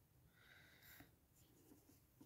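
Near silence, with faint scratching of a metal crochet hook and yarn as slip stitches are worked, a little stronger about half a second in.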